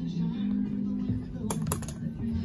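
Background music with held low tones, then a quick cluster of sharp clicks near the end as elevator car buttons are pressed.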